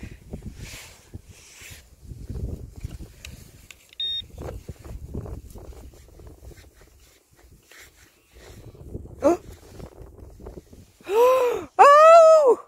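Gloved hands scraping and rummaging through soil and grass with wind buffeting the microphone, and one short electronic beep about four seconds in, typical of a metal detector pinpointer. Near the end comes a loud excited vocal exclamation, rising and falling in pitch twice, as a silver coin comes out of the ground.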